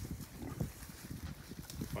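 Several piglets eating grass and oats, a quick, irregular run of crunching and chewing clicks.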